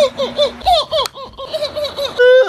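A person laughing in quick, high-pitched, repeated bursts, about four or five a second, with one sharp click about a second in.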